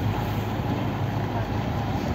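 Steady low engine rumble aboard a river car ferry, the ferry's engines running, with an even, unchanging level.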